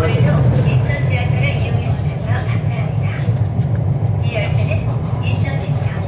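Incheon Line 2 light-metro train running along its track, heard from the front of the train as a loud, steady low rumble, with faint voices over it.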